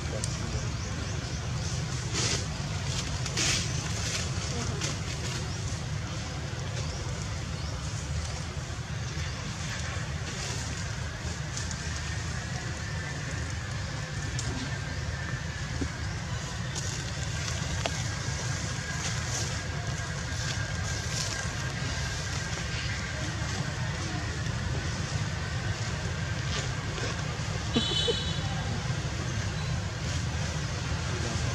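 Steady outdoor background noise: a low rumble with faint voices and a few soft knocks. From about a third of the way in, a faint, steady high tone runs through it.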